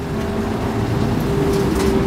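Street traffic: a low, steady vehicle engine rumble with a faint hum, growing slightly louder.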